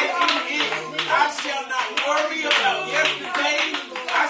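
Hands clapping in a steady rhythm, about three claps a second.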